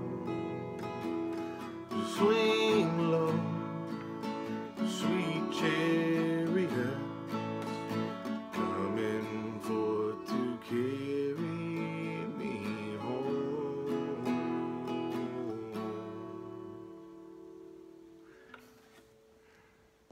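Acoustic guitar strumming chords in the song's closing outro. About sixteen seconds in the strumming stops and the last chord is left to ring, fading out.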